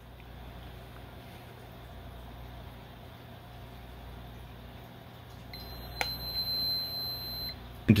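Hygger heater's digital controller giving one long, high, steady beep of about two seconds while its button is held down, as it switches from Fahrenheit to Celsius. A single click comes during the beep, over a steady low hum.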